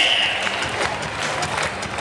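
Naruko wooden clappers clacking in scattered, irregular strokes as the dancers move, over a background of crowd noise.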